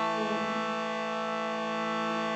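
Shruti box, its bellows-blown reeds sounding a steady, unchanging drone of several held notes.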